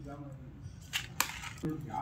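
Two short, sharp clicks about a second in, the second one louder, followed near the end by a child starting to speak.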